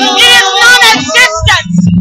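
Women singing loudly into handheld microphones, a wavering, held melody of a worship song.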